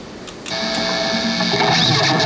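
A couple of clicks, then about half a second in the high-gain lead channel of a Crate GT1200H guitar head comes in through its 4x12 cabinet with a loud hiss and distorted electric guitar notes ringing out.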